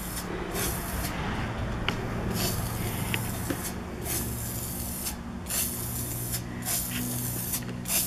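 Aerosol spray can of Rust-Oleum metallic oil rubbed bronze paint and primer hissing in a series of short bursts, each under a second, with brief pauses between them.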